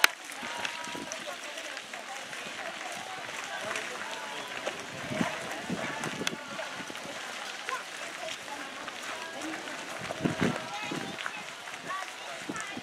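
Background chatter of many people talking at once as a group walks on gravel, with their footsteps on the gravel.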